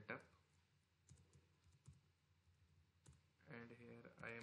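Faint keystrokes on a computer keyboard: scattered light key clicks while code is typed. A low voice comes in near the end.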